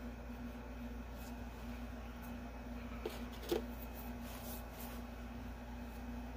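Faint scratching of a coloured pencil shading on paper in short strokes, over a steady low electrical hum. A single small knock about three and a half seconds in is the loudest sound.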